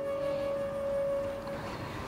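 A single steady tone, held for about a second and a half and then fading to a faint trace, over low hiss.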